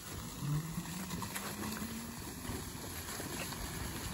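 Electric scooter pulling away over gravel: a low motor hum rises in pitch over the first two seconds, with tyres crunching on loose stones.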